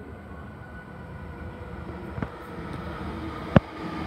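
Sydney Trains Waratah A-set electric train approaching the platform, its hum and rail noise growing steadily louder. Two sharp clicks cut through it, the louder one near the end.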